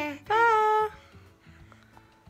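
A voice calling a drawn-out, sing-song "Pa!" (bye), followed by about a second of faint background music.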